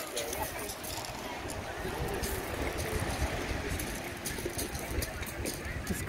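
Seaside ambience on a shingle beach: small waves washing on the pebbles under faint, distant chatter of beachgoers, with a light breeze rumbling on the microphone.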